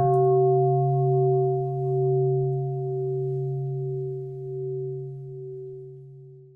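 Large bronze singing bowl ringing out after a single strike, a low deep tone with a few higher overtones, fading slowly with a gentle wavering in loudness.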